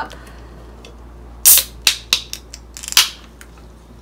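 Aluminium Coca-Cola can being opened by its pull tab: a sharp crack with a hiss of escaping gas about a second and a half in, a few small clicks of the tab, then a second short crack and hiss about three seconds in.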